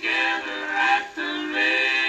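A 78 rpm Columbia record of gospel singing, a vocal group in harmony with guitar accompaniment, playing on a Victrola suitcase turntable. Held sung notes, with a short break between phrases about a second in.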